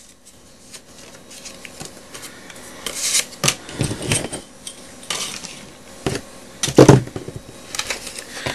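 A steel ruler and card stock being handled on a cutting mat: paper rustling, with a few sharp metallic knocks and clatters, the loudest about seven seconds in.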